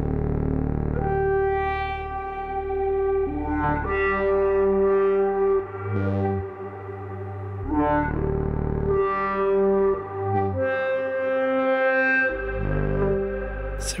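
Generative Eurorack modular synthesizer patch (a Polykrell structure of Krell function generators) playing a low sustained bass voice under melody notes, each held a second or two before stepping to a new pitch, the bass chasing the melody's pitches around.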